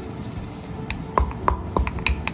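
Stone pestle knocking and grinding in a stone mortar, crushing cumin seeds: a quieter scraping first second, then a run of sharp ringing knocks at about three a second.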